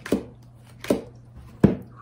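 Tarot cards laid down one at a time on a tabletop: three sharp taps, the last the loudest.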